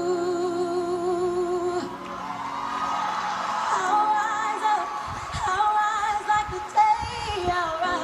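A young woman sings a pop ballad over backing music, played through a TV and recorded off its speaker. She holds one long note with vibrato, then from about two seconds in breaks into a climbing run of higher notes.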